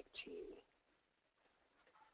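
Near silence. A man's voice gives one brief, faint murmur in the first half-second, then the line is quiet.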